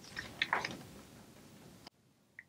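Quiet room tone with a brief faint sound about half a second in, cutting off abruptly near the end.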